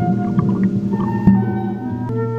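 Background music of long, held tones that shift to new pitches every second or so.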